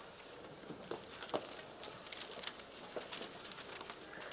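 Faint scattered clicks, knocks and light clinks echoing in a large church: metal communion vessels being handled and cleared at the altar, with people walking about.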